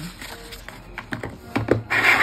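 Light clicks and taps from a paper leaflet being tucked into a hinged fountain-pen presentation box and its lid being closed, with a cluster of louder clicks near the end as the lid shuts.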